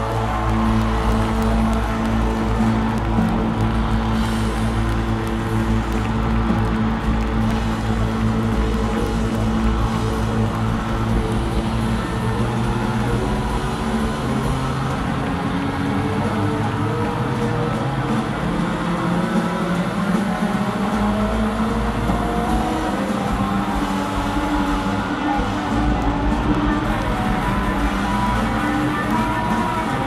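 Rock band playing live in a concert hall, a full, continuous band sound with long held notes over a steady bass, with no clear singing.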